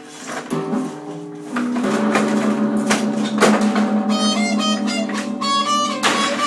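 Electric guitar strummed through an amplifier: chords ringing out, getting louder about a second and a half in, with high ringing notes near the end.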